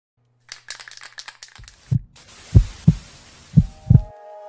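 Intro sound effects: a quick run of rattling clicks, then a steady hiss under deep thumps, the later ones coming in pairs like a heartbeat.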